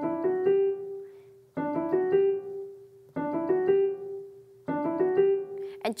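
Piano playing a quick rising four-note group, D, E, F sharp, G, in the right hand, four times, each run ending on a held G with a short pause before the next: a finger-speed exercise on part of the D major scale, with the thumb crossing under.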